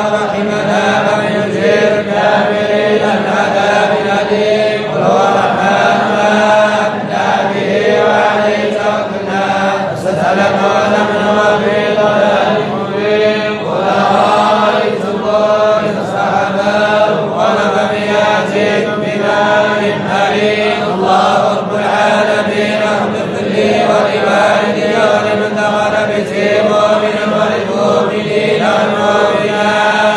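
Men's voices chanting together in a Sufi religious gathering: a continuous, unbroken group chant over a steady low held tone.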